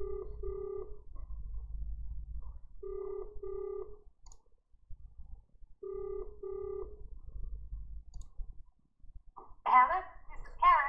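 Telephone ringback tone of an outgoing call ringing at the far end: three double rings, each two short steady beeps, about three seconds apart. Near the end the call is answered and a voice comes on the line.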